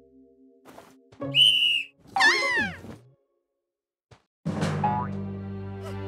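Cartoon sound effects: a short high whistle-like tone, then a quick falling slide like a boing. After a second of silence, bright music with a rising sweep starts about four and a half seconds in.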